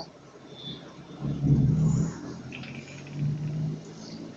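Car engine heard from inside the cabin, pulling harder twice: a low hum swells about a second in, eases, and swells again near the end.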